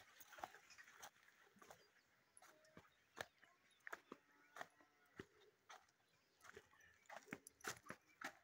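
Faint scattered clicks and scuffs of footsteps and handling noise from a handheld phone. A faint pitched call sounds a few times between about two and five seconds in.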